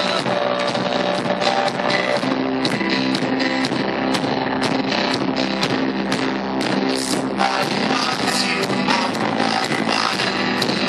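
Live band music led by piano, with a steady drum beat, recorded from the audience at a small venue.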